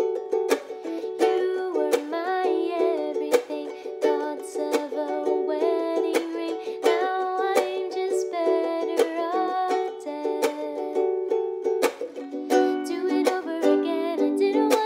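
A woman singing softly over a KoAloha ukulele strummed in a steady rhythm of chords.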